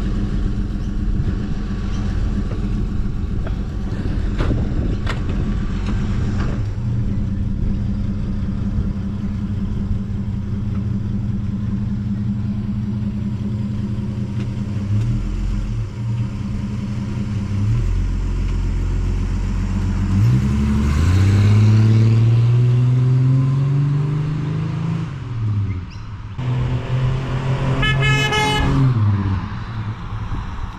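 Holden Torana SL engine idling steadily at the kerb, then revving up as the car pulls away, easing off, and rising again as it drives off up the street. A short horn toot comes near the end.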